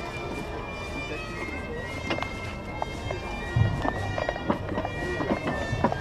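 Bagpipes playing a melody, with sustained high notes that move in steps, over voices and scattered short clicks.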